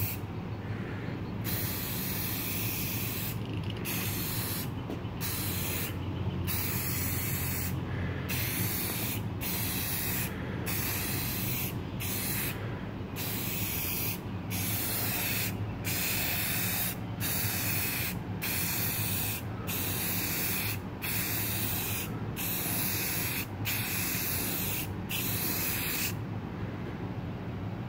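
Rust-Oleum gloss clear aerosol can spraying in passes: a hiss lasting about a second at a time, broken by short gaps roughly every second and a half as the trigger is let go at the end of each pass. A steady low hum runs underneath.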